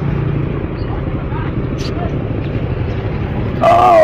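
Street traffic with a steady low engine rumble and faint voices in the background; a person speaks loudly close by near the end.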